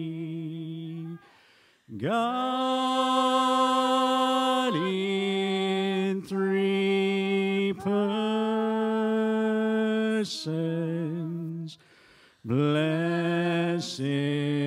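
Slow, unhurried singing: a voice holds long notes of a few seconds each and scoops up into each new note. It breaks off briefly about a second in and again near the end.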